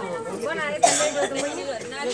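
Several people talking over one another in a crowd, with a brief loud burst about a second in.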